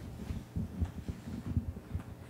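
Faint, irregular low thumps over a steady low hum.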